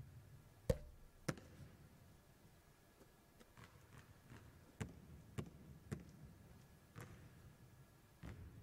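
Basketball bouncing on a hardwood court after a made free throw: two sharp bounces about a second in, then four more single bounces spread over the rest.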